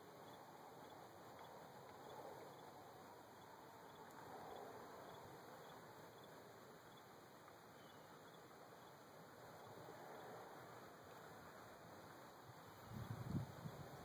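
Near silence: faint outdoor ambience, with a few brief low rumbles on the microphone near the end.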